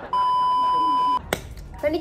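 TV test-pattern tone: a single steady high beep lasting about a second that cuts off abruptly, followed by a sharp click.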